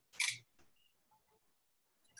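A single short click from a computer mouse about a quarter second in, then near silence.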